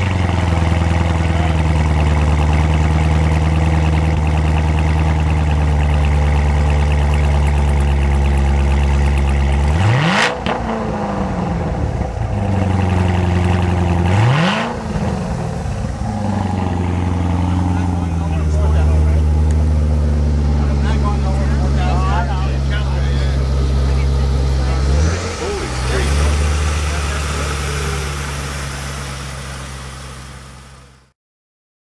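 Callaway SC757 Corvette Z06's supercharged 6.2-litre V8 idling through its quad exhaust. It is revved sharply twice, about ten and fourteen seconds in, and blipped once more near twenty-five seconds, settling back to idle each time.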